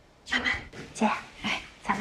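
Women's voices in short, lively exclamations of greeting, starting about a quarter of a second in.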